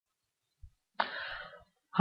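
A man's single short cough about a second in: a sudden burst that dies away within about half a second.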